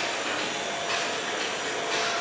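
Steady, even background hiss of the café room, like a fan or air-conditioning unit running, with no distinct events.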